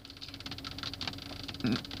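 Car engine running, heard from inside the cabin: a quiet, steady hum with a faint, fast ticking.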